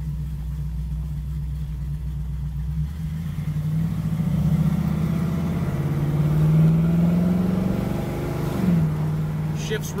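Chevrolet 350 V8 with headers, heard from inside the 1972 Camaro's cabin while driving: steady at first, then rising in pitch and loudness as the car accelerates from about three seconds in. Near the end the engine note drops quickly, as the Turbo 350 automatic upshifts, and settles back to a steady cruise.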